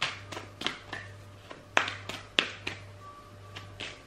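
A tarot deck being shuffled by hand: a run of irregular sharp card snaps and taps, the loudest two a little under and a little over two seconds in. Faint background music and a low steady hum lie underneath.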